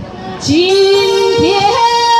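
A woman singing into a handheld microphone over backing music; her voice comes in about half a second in with a long held note, then a short rising phrase.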